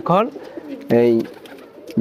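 Domestic pigeons cooing in their loft cages: a short falling coo at the start and a steady held coo about a second in.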